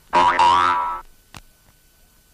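A springy 'boing' sound effect lasting about a second, rising in pitch. A single faint click follows.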